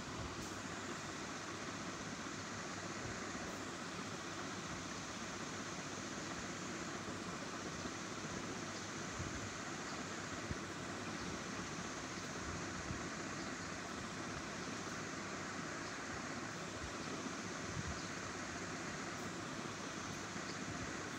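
Steady background hiss, even throughout, with a few faint low knocks.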